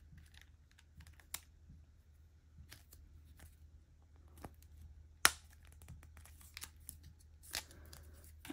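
Small plastic toy crib pieces being handled and fitted together: scattered light clicks and taps, the sharpest one about five seconds in, over a faint steady low hum.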